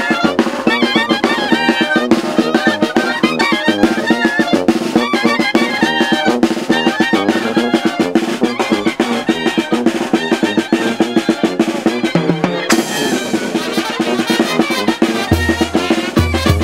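Oaxacan brass band (banda de viento) playing: clarinets and trumpets carry the melody over a fast, steady snare drum. The sound changes about thirteen seconds in, and a bass drum comes in near the end.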